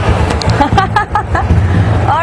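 The small engine of a three-wheeled auto-rickshaw taxi running with a steady low rumble. About a second in there are a few short voice sounds.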